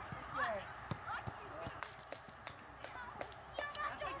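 Faint live sound of young children playing football on a grass pitch: distant children's voices calling out, with scattered light knocks of the ball being kicked and of running feet.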